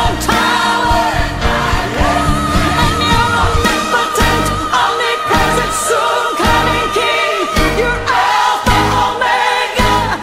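Live worship music in church: a congregational praise song, sung with band accompaniment. A long wavering note is held for several seconds in the middle.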